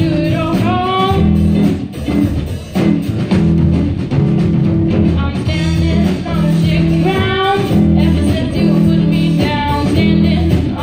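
A live blues trio playing: electric guitar, upright double bass and a drum kit, with a woman singing at the microphone.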